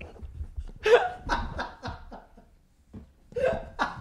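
A man laughing hard in short, breathy bursts that die away a couple of seconds in, then start up again near the end.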